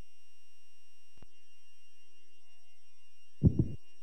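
Opening of a song: a held electronic chord of steady, high tones, with a single click a little over a second in. Near the end, low thumping beats come in.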